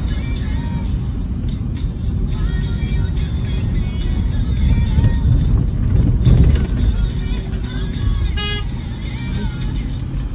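Road and engine noise inside a moving car's cabin: a steady low rumble that swells a little around the middle, with music in the background and a brief sharp sound near the end.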